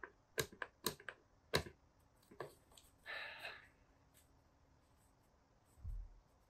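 Light clicks and taps of a cardboard fragrance box being pressed and handled as it is worked open, about four in the first two seconds, then a brief rustle around three seconds in and a dull thump near the end.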